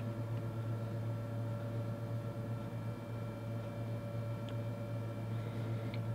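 Steady low mains hum with a faint, constant higher tone above it, unchanging throughout.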